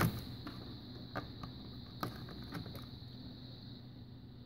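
Faint clicks and handling noise as test-lead plugs are pushed into the jacks of a digital multimeter, a few separate ticks spread over the seconds.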